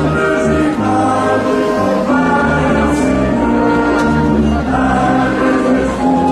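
Mixed choir singing the entrance hymn of a Mass in long held chords, with a low brass accompaniment under the voices.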